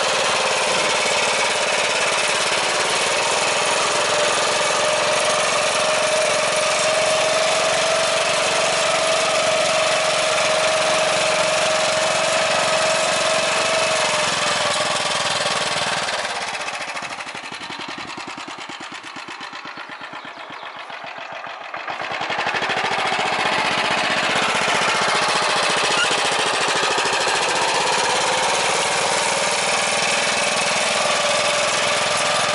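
Motor Sich MB-8 walk-behind tractor's engine running steadily under load as it pulls a plough through the soil. It drops away for several seconds past the middle, then comes back up to full level.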